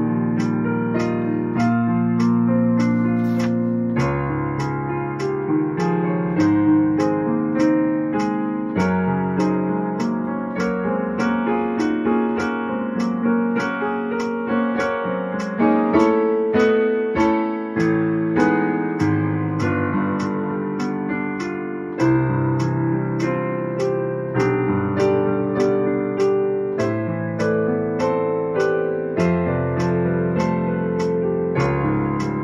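Yamaha digital piano playing a chordal accompaniment, with a metronome clicking steadily in time over it.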